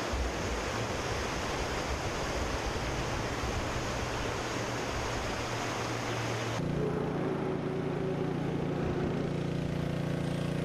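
Fast-flowing floodwater rushing in a swollen river, a steady noisy wash. About two-thirds of the way through it cuts abruptly to a steady low mechanical hum with a constant pitch.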